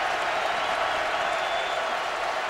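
Football stadium crowd making a steady roar of many voices.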